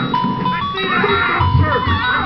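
A simple electronic tune of plain tones stepping from note to note, like a chime melody, with voices talking underneath.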